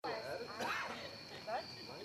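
Short wordless voice sounds over a steady high-pitched drone, starting abruptly at a cut from silence.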